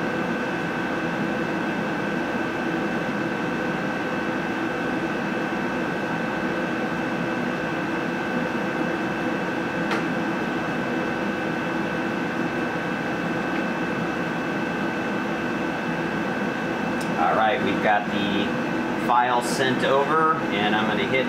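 Steady hum of a CO2 laser engraver's running equipment (exhaust fan, air-assist pump and cooling) with a low flow of air at the nozzle, holding a few fixed tones. There is a single click about halfway through, and a man's voice comes in near the end.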